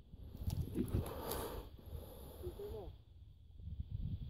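Faint voices in the background over a low rumbling noise on the microphone.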